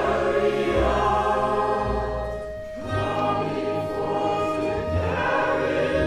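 A soprano voice singing a gospel spiritual with vibrato over a small orchestra, with plucked double bass notes underneath.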